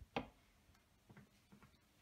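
Near silence: room tone, with one short faint click just after the start and a few fainter ticks later.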